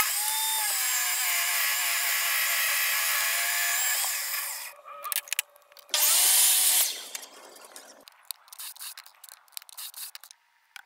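A benchtop table saw runs steadily for about four and a half seconds. About six seconds in, a compound miter saw spins up and makes one short cut through a pine board. Light clicks and knocks follow.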